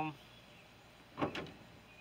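Quiet outdoor background in a pause between a man's words, opening on the tail of a drawn-out spoken "um". About a second and a quarter in there is one brief soft noisy sound.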